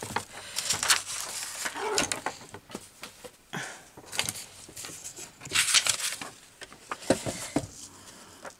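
A sheet of paper being handled: rustling and sliding in irregular bursts, with a few light taps. The loudest rustle comes about two-thirds of the way through.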